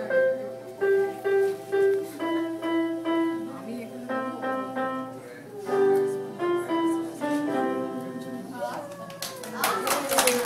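Electronic keyboard playing a slow, simple melody of single held notes in short phrases. Clapping breaks out near the end.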